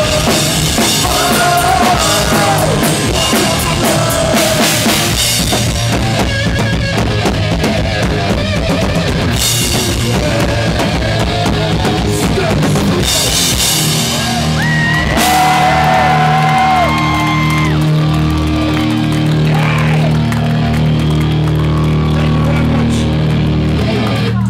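Live punk rock band playing: drum kit, electric guitar and bass, with male vocals. About 14 seconds in the drums stop and the guitars and bass ring out on held chords as the song closes.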